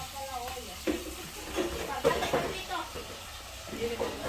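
Handling of a large plastic water bottle, with short crackles and water sloshing as a man drinks from it. Voices are faint in the background.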